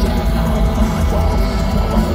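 Loud live black metal from a band on stage, heard from within the crowd through the festival PA: guitars and drums playing steadily.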